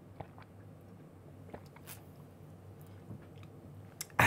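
Faint mouth sounds of drinking: a few soft, scattered clicks and smacks of sipping and swallowing.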